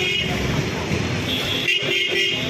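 Busy market-street noise: people talking and traffic. A vehicle horn sounds briefly near the start and again near the end.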